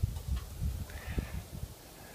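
Faint handling noise from the dome camera being worked on up on a ladder: scattered low thumps and rustle with a few light clicks.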